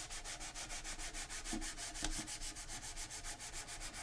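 Fine-grit sandpaper rubbed by hand over a painted surface, a faint, steady scratching of quick, even back-and-forth strokes. It is a light sanding to remove oily residue that makes retarder medium clump and go on unevenly.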